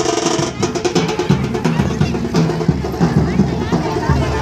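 Procession music with fast drumming, a dense roll of strokes in the first half-second, then a steady beat, over the voices of a crowd.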